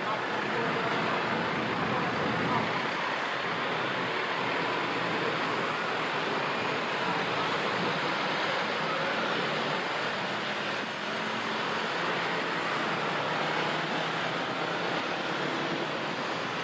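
Steady rumble of a slow-moving train of empty passenger coaches being shunted off to the yard, with a faint engine hum running under it.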